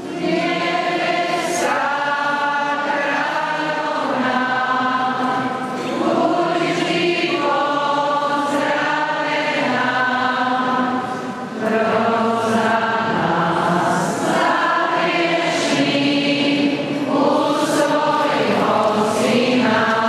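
A group of voices singing a slow hymn in long, held notes, phrase by phrase, with a short breath about halfway through.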